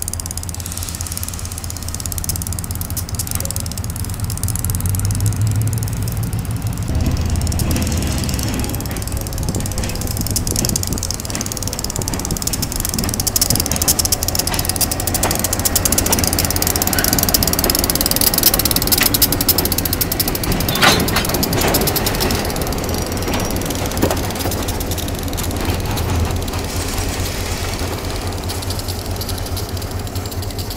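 EMD SW8 switcher locomotive's diesel engine running at low speed as it passes, followed by a second diesel locomotive and boxcars. Steel wheels click and clank over the rail joints, with one sharp clank a little past two-thirds of the way through.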